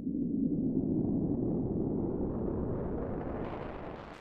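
Absynth 5's Aetherizer granular effect processing a pure sine wave, fully wet: a dense, low stream of short grains that spreads higher in pitch as the grain duration is shortened, then fades near the end as the grains shrink toward nothing.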